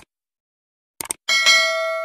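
Subscribe-animation sound effects: short mouse-click sounds at the start and about a second in, then a bell ding whose several steady tones ring on and slowly fade.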